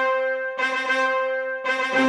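Brass instrument playing three held notes at the same pitch, each separated by a short break, with the last note starting to slide downward at the end.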